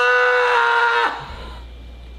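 A man yelling in pain from being tattooed: one long cry held at a steady pitch that stops about a second in.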